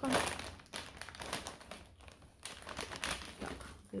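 Plastic snack packet crinkling in the hand as it is held up and set down on the table, in a run of irregular rustles.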